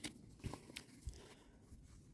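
Faint rustle of paper manual pages being handled and turned, with a few soft ticks.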